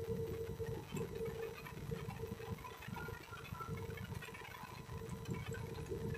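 Faint ambience of a large event hall through the stage sound system: a low rumble with a steady faint hum, and scattered distant crowd noise.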